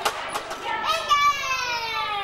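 A child's high voice calling out in one long falling tone lasting about a second, after a short sharp knock at the start, over the chatter of other children.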